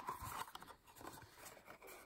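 Faint rustle of a folded cardstock box being handled and its top flaps pressed together, with a couple of small touches near the start.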